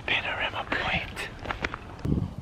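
Soft whispered speech from a person close to the microphone, with a few light clicks in the second half.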